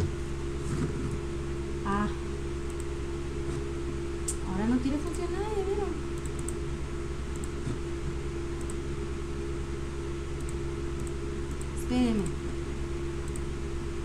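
Electric fan running with a steady hum through a small room, broken by a few short murmurs of a woman's voice.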